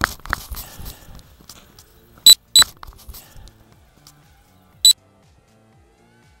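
A brief crackly rush, then three loud, short, high electronic beeps: two close together and a third about two seconds later, over faint background music.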